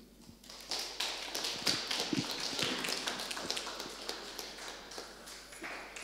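Audience applauding: a dense patter of clapping that starts about a second in and tapers off near the end.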